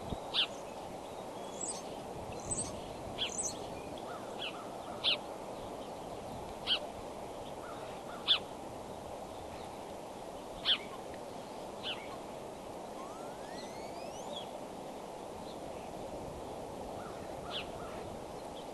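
Wild birds giving short, high calls every second or two over a steady low rushing background, with one thin rising whistle about two-thirds of the way through.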